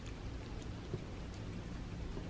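A cat licking and lapping pureed chicken off a paper plate: small, scattered wet clicks and smacks over a steady low room hum.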